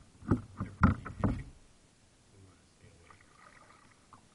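Kayak paddling: four quick knocks and splashes from the paddle against the plastic hull and the water in the first second and a half, then only faint water sounds.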